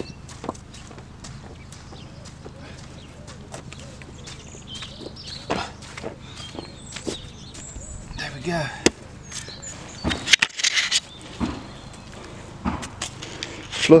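Hammer knocking nails into reclaimed pallet-wood boards, a run of irregular knocks of varying strength, with a louder cluster of knocks about ten seconds in.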